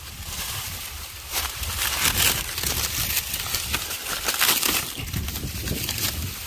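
Dry corn leaves and husks rustling and crackling as someone pushes through standing, dried-out corn plants and takes hold of an ear, in several louder bursts, over a steady low rumble of wind on the microphone.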